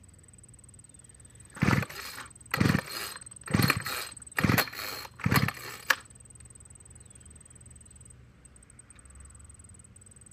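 Old gas string trimmer's recoil starter pulled five times, about a second apart, each pull a short cranking whir; the engine never fires, and a click follows the last pull. The trimmer won't start, and the owner thinks old gas may be the cause.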